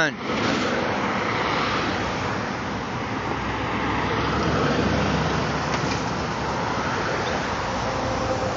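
Steady road traffic noise from a city street, swelling slightly around the middle.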